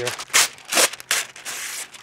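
Parchment paper being torn and rustled by hand: about four short ripping sounds in quick succession, the last one longer.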